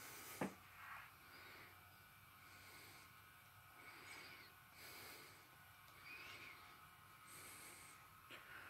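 Near silence: room tone with faint, soft breathing close to the microphone about once a second, and a short click about half a second in.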